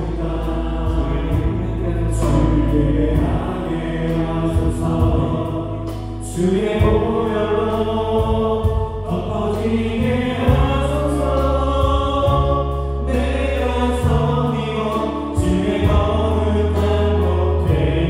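Live contemporary worship music from a band of electric guitar, keyboards, bass guitar and drums, with sustained choir-like voices over the top. It eases off briefly about six seconds in, then swells back up.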